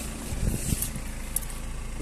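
BMW 320d's 2.0-litre four-cylinder diesel engine idling with a steady low hum, with a few low knocks of handling about half a second in.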